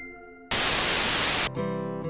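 A fading synth tone, then about half a second in a one-second burst of white-noise static that cuts off abruptly, used as a TV-static transition effect. Strummed guitar music starts right after it.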